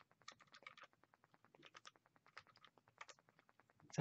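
Faint clicks of computer keyboard keys being typed, in several short irregular runs: a terminal command being keyed in and entered.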